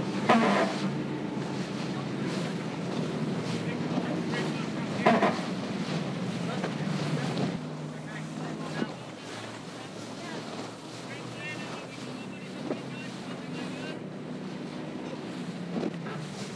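Motorboat engine running steadily with wind and rushing, splashing water, with loud splashes about half a second in and again about five seconds in.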